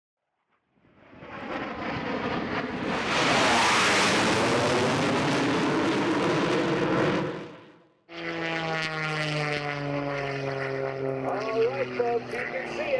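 A rushing, jet-like roar swells up, holds, and fades out about eight seconds in. Then, after a sudden cut, a propeller aircraft's engine drones with its pitch falling slowly as it passes.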